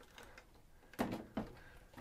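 A metal rack-mount synth module set down on top of another rack unit: two soft knocks about a second in, close together.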